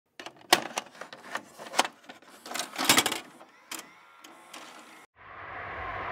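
A quick, irregular run of sharp clicks and knocks for about five seconds, which cuts off suddenly. It gives way to steady background noise with a low hum.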